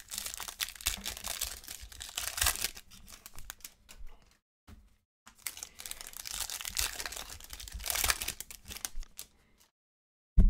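A trading-card pack's foil wrapper being torn open and crinkled in the hands, in two spells of crackling with a short break a little over four seconds in.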